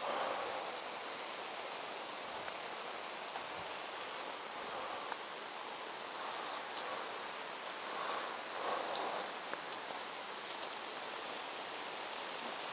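Steady outdoor background hiss with a few soft, brief rustles.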